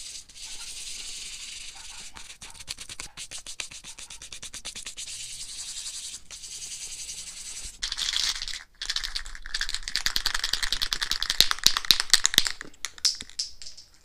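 Sandpaper rubbed back and forth over a Razor drift trike's painted frame, a steady scratchy hiss. From about eight seconds in, a spray paint can is shaken hard, its mixing ball rattling quickly.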